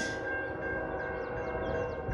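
Distant locomotive air horn of an approaching freight train sounding a long, steady multi-note chord.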